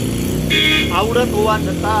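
A man talking, with a steady low engine hum underneath.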